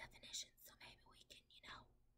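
A woman faintly whispering to herself in short, broken snatches.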